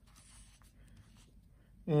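Faint rustling of a sheet of letter paper being handled and shifted on a wooden table, then a man's voice starts near the end.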